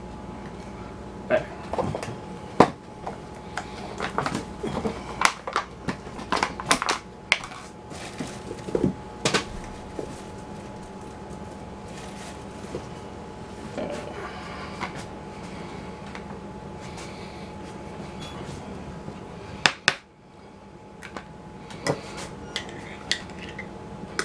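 Kitchen things being handled on a tiled counter: a plastic food container set down, a glass jar and a spoon, giving scattered clicks and knocks. The knocks come thickest in the first half, with a sharp one later, over a faint steady hum.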